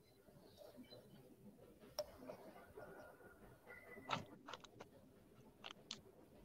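Near silence in a small room, with a few faint clicks and knocks of a book and papers being handled: one sharp click about two seconds in, a cluster a little after four seconds, and two more near the end.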